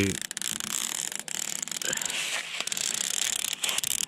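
Red release liner being peeled off the double-sided adhesive tape on the back of an LED light strip: a steady, fine crackling rasp made of many tiny ticks, with a brief let-up partway through.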